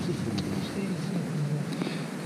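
Quiet speech in a low man's voice, with a few faint ticks.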